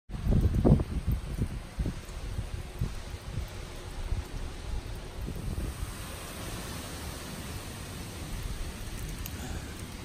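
Steady rain hiss outdoors, with wind gusting on the microphone, heaviest in the first two seconds and then easing to a steadier hiss.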